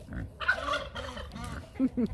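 A puffed-up tom turkey gobbling, with a string of short, low grunts from a pot-bellied pig running underneath.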